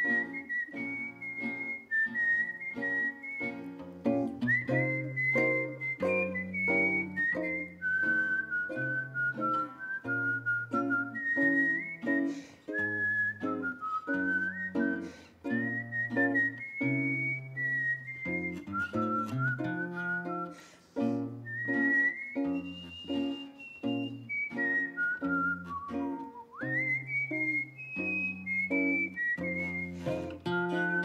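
A whistled melody over fingerpicked acoustic guitar playing a steady old-time rhythm with alternating bass notes. The whistled line slides between notes and swoops upward late on.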